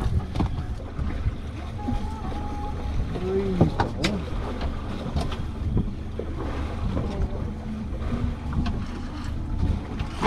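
Steady wind and water noise on a small fishing boat at sea, with a sharp knock about four seconds in.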